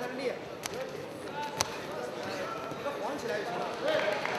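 Scattered shouts from coaches and spectators in a large hall, with two sharp slaps, the louder one about a second and a half in.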